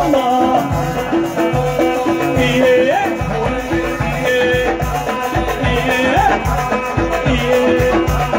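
Amplified live Moroccan Amazigh band music: a melodic lead line that slides up in pitch every second or two, over a steady drum beat.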